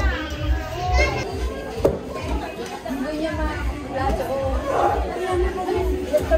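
Several people chatting with children's voices among them, over background music with a steady bass beat.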